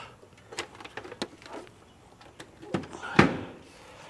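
Light clicks and knocks of a Kohler electronic shower valve's housing being handled and set down against the framing and floor, with one louder knock about three seconds in.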